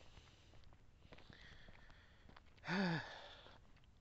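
A man's short, breathy voiced exhalation, its pitch rising and falling once, about three-quarters of the way through; the rest is quiet background.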